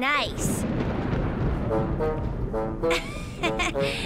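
Cartoon sound effects and score: a low rumble for about the first second and a half, then a run of short brass notes, trombone-like.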